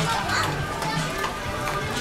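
Busy shop ambience: many shoppers' voices overlapping in chatter, with background music playing.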